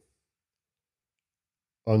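Dead silence during a pause in a man's speech; his voice comes back with a single word near the end.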